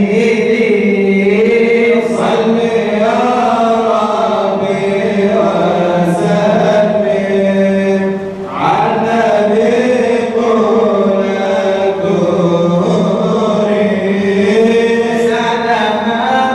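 Men chanting a madih nabawi, a praise song for the Prophet, through a microphone: long, drawn-out melodic vocal lines over a steady low held note, with a short break about eight and a half seconds in.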